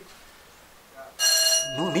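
A piece of metal struck once, about a second in, giving a clear bell-like ring: the bright upper ring dies away quickly while a single clear tone keeps sounding.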